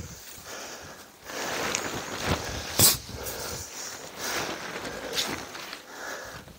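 Rustling of a tent's synthetic flysheet as it is handled and pulled, with a sharp click about three seconds in.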